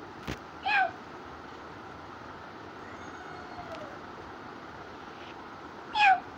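Two short, high-pitched cries that fall in pitch, one just under a second in and one at the very end, over a steady background hiss. A sharp click comes just before the first.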